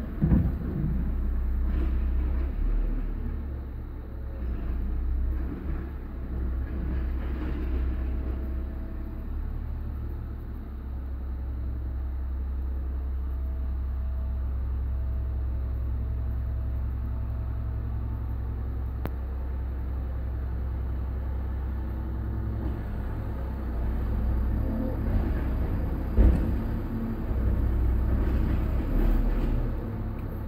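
Car engine idling while parked, heard from inside the cabin as a steady low rumble. A couple of brief knocks come through, one right at the start and one near the end.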